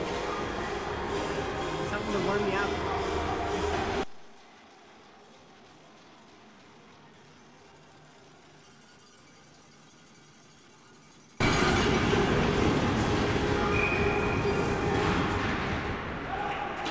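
Steady din of an ice hockey arena during a stoppage in play. About four seconds in it fades away to a faint hum, and about eleven seconds in it returns abruptly.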